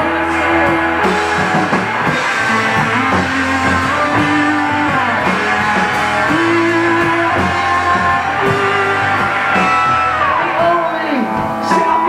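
Live rock band playing: two electric guitars, electric bass and drum kit, with a man singing at times.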